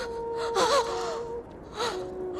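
A woman gasping and moaning in pain: two breathy cries with wavering pitch, one about half a second in and a shorter one near the end. Under them runs a held flute note from the background music.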